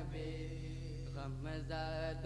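Male voice chanting a naat, an Urdu devotional song in praise of the Prophet, with no instruments. A held note for about the first second, then a wavering melodic line, over a steady low hum.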